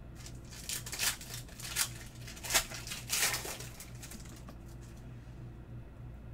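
Foil wrapper of a Panini Select basketball card pack crinkling in several quick bursts as it is torn open and the cards pulled out, over a low steady hum.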